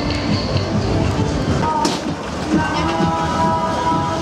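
Loud fairground ambience of music and voices mixed together, with several steady tones held together from about two and a half seconds in.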